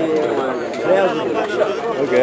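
Chatter of several men talking over one another.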